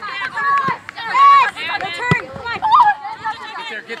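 Players and coaches shouting calls during a soccer game, with one sharp thump about halfway through.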